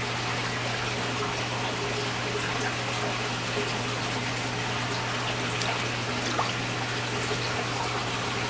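Water sloshing and trickling in a tub as a hand moves among koi at the surface, with a few small splashes, over a steady low hum.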